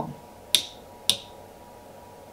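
Two sharp clicks about half a second apart as a mini rocker switch is flicked, switching a 12 V automotive relay and its LED light.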